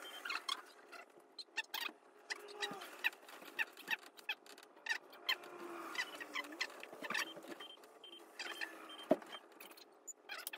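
Irregular light clicks and rustles, a few every second, from someone handling things and moving about a small room.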